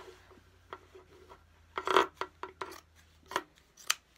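Sharp fabric scissors cutting through a T-shirt, a few separate crisp snips with cloth shifting in between, and one louder short burst about halfway through.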